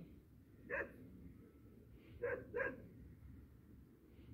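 Puppy barking three times: one short bark about a second in, then two quick barks in close succession a little past halfway.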